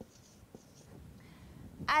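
Dry-erase marker writing on a whiteboard: faint short squeaks and taps of the felt tip on the board during the first second or so. A woman starts speaking right at the end.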